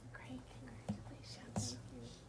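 Faint, hushed voices murmuring over a steady low hum, with two soft knocks about a second in and a little later, the second the louder.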